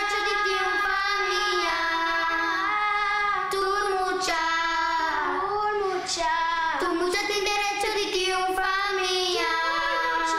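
A child singing a slow melody alone, with long held notes that glide from one pitch to the next.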